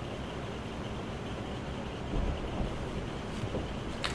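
Steady low background hiss and hum of room tone, with a brief low rumble a little over two seconds in.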